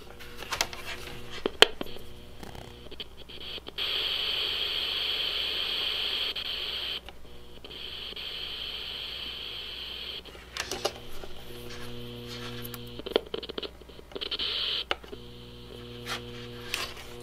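Optical frequency counter's built-in speaker sounding the light signal it picks up: a steady high tone for about six seconds, broken once midway, then a lower buzz with several overtones near the end. A few sharp clicks of handling come first.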